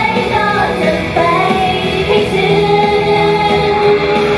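Live pop music with female idol singers singing into handheld microphones; a long held note sounds from about a second in.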